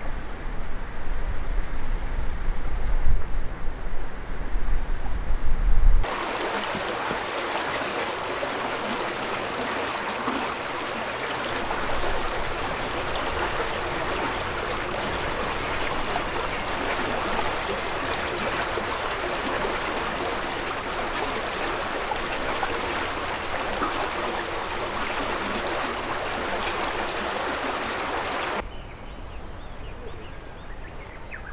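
Wind buffeting the microphone for about six seconds, then a sudden cut to the steady rush of flowing stream water that drops away shortly before the end.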